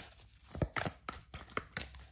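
A deck of oracle cards being shuffled by hand: a quick, uneven run of sharp card snaps and taps.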